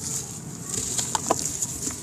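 A crumbly sand-cement block crushed in the hands, giving a steady gritty crunching hiss as the powder trickles down, with a few sharp crackles about a second in.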